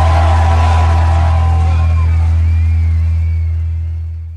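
Music fading out at the end of a song: held notes over a strong, steady deep bass note, dying away toward the end.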